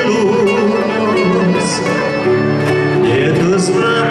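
Live gaúcho folk dance music from a trio: a man singing, backed by a piano accordion and two acoustic guitars.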